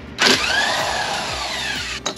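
Electric power tool's motor spinning up and then winding down in pitch over about a second and a half, backing out a motorcycle silencer mounting bolt. It starts abruptly about a quarter second in and is the loudest sound, over quieter background music.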